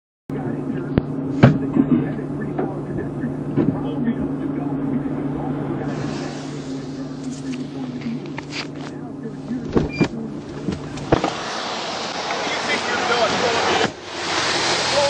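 Dash-cam audio from a stopped police car: a steady low engine hum with scattered clicks and knocks. About eleven seconds in, a broad hiss of outdoor noise from the wet road comes in.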